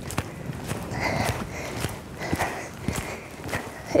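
A pony's hooves striking a sand arena surface: a run of unevenly spaced thuds, with a faint breathy sound about a second in.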